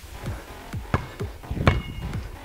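A basketball being dribbled on a stone-paved patio: about five sharp bounces at uneven intervals of roughly half a second, each with a short dull thud. Background music runs underneath.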